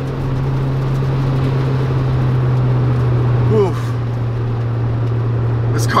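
1994 Mazda Miata NA8's 1.8-litre inline-four heard from inside the cabin, holding a steady drone at constant revs while cruising, with road and wind noise over it.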